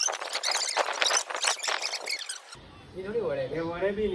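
Fast, high-pitched chattering voices, like speech played sped up, then an abrupt cut about two and a half seconds in to a man talking at normal pitch.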